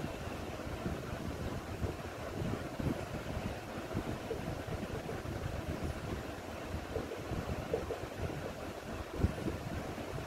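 A steady, low, rumbling background noise, like air buffeting the microphone.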